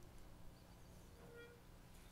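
Near silence: quiet room tone, with one faint, brief note about a second and a half in.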